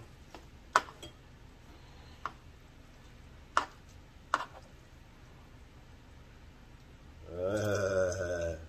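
Four sharp, scattered clicks of kitchen utensils as fettuccine is twisted and served, then a brief wordless voice near the end.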